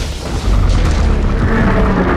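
Film explosion sound effect: a deep, rumbling boom that swells louder about half a second in as the rainbow bridge blows apart. Orchestral score plays over it.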